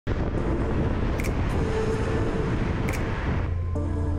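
Steady wind and road noise from a car driving, heard from a hood-mounted camera, under background music. The driving noise drops out about three and a half seconds in, leaving only the music.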